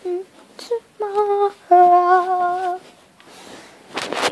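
A young girl humming a short wordless tune of a few held notes, the longest about a second long near the middle.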